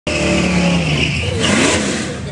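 Engine of a drag-racing Chevrolet Silverado pickup running loud and revving, its pitch falling away about a second in.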